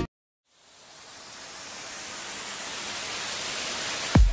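A moment of silence, then a hiss of noise that fades in and swells steadily louder, strongest in the treble: a white-noise riser used as an editing transition between two pieces of music.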